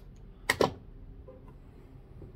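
Two sharp clicks in quick succession about half a second in: a small screwdriver and a lamp socket being handled and set down on a wooden workbench. This is followed by faint handling noise.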